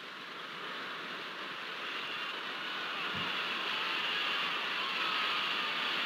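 A steady hiss-like noise with no tune or words, slowly growing louder, with one brief low thump about three seconds in.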